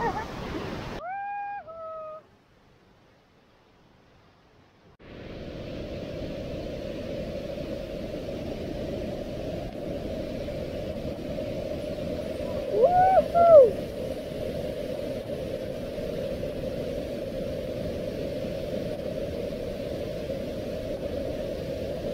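Steady rush of the river Möll's water through its gorge, with two brief voice-like calls, one about a second in and one a little past halfway. The sound drops out to near silence for about three seconds just after the first call.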